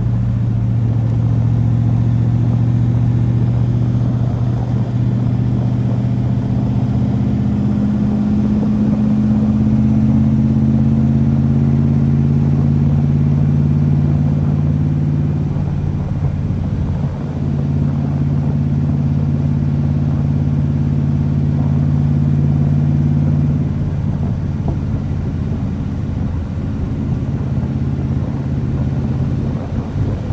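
V8 of a 1974 C3 Corvette running through side-exit exhaust pipes while driving, heard from the open cockpit. The engine note climbs slowly, drops back about halfway through, then holds steady.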